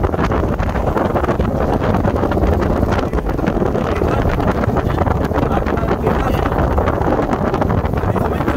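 Steady wind buffeting the microphone on a small boat under way, mixed with the rush and slap of water along the hull.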